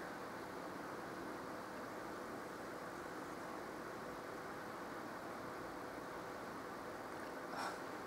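Steady room noise: a faint, even hum and hiss with no distinct events.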